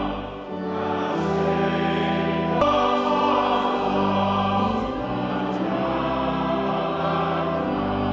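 Church organ playing a hymn in held chords that change every second or two, with a congregation singing along.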